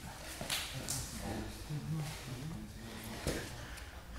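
Laboured breathing and low grunts from two grapplers straining against each other, with a few brief scuffs and slaps of bodies and limbs on the mat.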